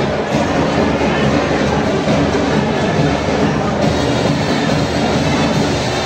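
Marching band playing. In this stretch the drums and cymbals dominate as a dense, driving rhythm, and the sustained brass notes thin out.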